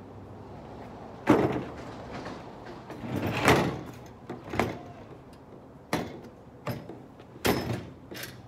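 Clunks, knocks and scrapes of a metal grille gate and boards being handled and set down in a shed doorway: a sharp knock about a second in, a longer scraping clatter a couple of seconds later, then several short clunks.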